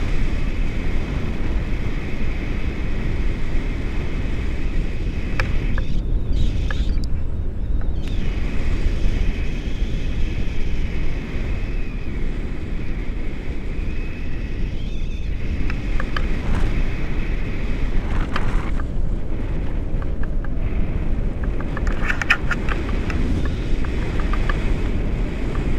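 Airflow of a paraglider in flight buffeting an action camera's microphone: a steady, loud low rushing.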